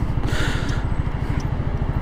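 Zontes 350E scooter's single-cylinder engine pulling under throttle through a left turn, a steady rapid low beat of firing pulses heard from the rider's seat.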